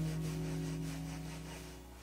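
Tenor saxophone holding a low note at the end of a phrase. The note fades out over about a second and a half, over a steady electronic backing pad that carries on.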